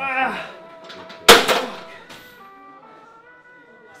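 A single loud slam about a second in, followed by a short ringing smear: a cable machine's weight stack dropped as the set ends. A short burst of voice comes just before it, and background music with held notes runs after it.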